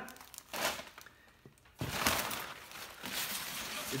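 Brown kraft packing paper crumpling and rustling as it is pulled out of a cardboard shipping box. There is a short burst about half a second in, then a longer, louder spell from about two seconds in.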